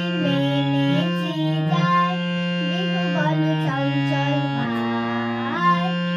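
Harmonium playing held chords that change every second or so, with a girl's voice singing along over them: morning singing practice (riyaz).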